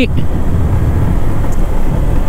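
Steady low rumble of a motorcycle being ridden at about 35 km/h, wind buffeting the microphone mixed with engine and road noise.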